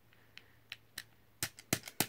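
Plastic clicks of a Super Nintendo controller's D-pad and buttons being pressed, about seven short clicks, sparse at first and coming faster toward the end.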